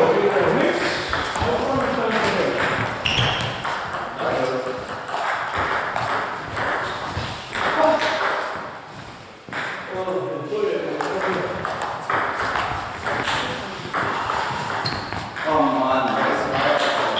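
Table tennis ball clicking off bats and the table in quick rallies, with people's voices at times.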